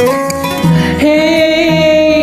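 A man singing a slow soft-rock ballad over a played acoustic guitar, holding a long note with vibrato from about a second in.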